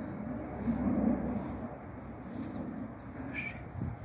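Jet aircraft passing overhead at a distance: a low rumble that swells about a second in and then eases.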